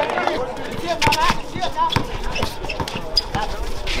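A basketball being dribbled on an outdoor court, a run of sharp bounces, over voices and crowd chatter.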